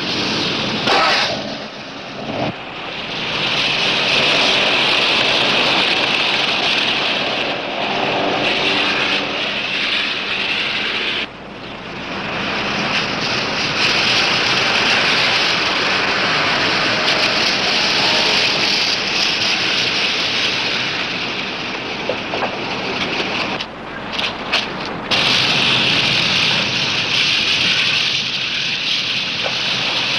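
Cars driving by: a steady mix of engine and road noise, with short drops in level about eleven seconds in and again near twenty-four seconds.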